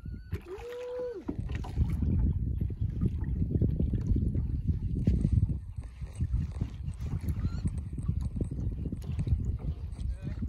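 Water churning and sloshing around the hulls of a small homemade catamaran as a hand-worked pole lever drives its underwater fish-tail fin. It is a dense, uneven low rumble that builds up about a second and a half in and keeps going.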